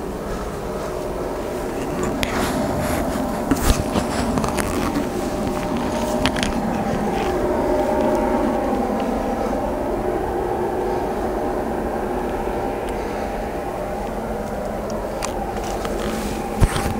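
Off-road vehicle's engine running steadily at idle, with a few sharp clicks and knocks in the first several seconds.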